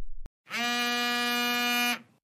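Mobile phone ringing with an incoming call: one steady buzzing ring tone about a second and a half long, just after a short click.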